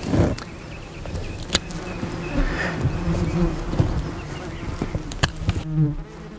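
A flying insect buzzing steadily with a slightly wavering pitch, and a few sharp clicks, the loudest about a second and a half in.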